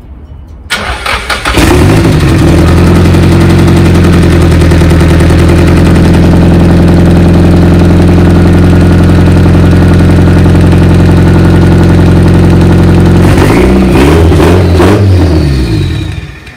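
Nissan SR-series four-cylinder engine in a C33 Laurel cranking for about a second and catching on the first attempt, then idling loud and steady: the first start after the engine swap and a no-spark fault. Near the end the throttle is blipped a few times, the pitch rising and falling.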